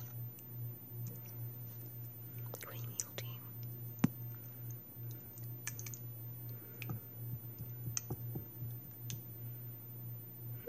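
Faint, irregular small clicks and ticks, the sharpest about four seconds in, over a steady low hum.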